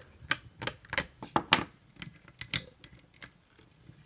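Hard plastic clicking and tapping as the toy robot's grey plastic guns are handled and fitted against the figure: a dozen or so sharp, irregular clicks over the first two and a half seconds, then near quiet.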